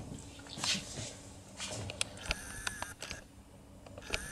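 Faint handling of a metal lever-lock impression pick and key blank: a short hiss about half a second in, then a run of small sharp clicks and taps, some ringing briefly, over about a second and a half.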